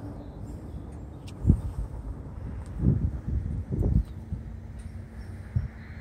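Low, steady rumble of a distant diesel passenger locomotive approaching slowly, with a faint steady hum coming in about four seconds in. Several short low thumps break through, the loudest about one and a half seconds in.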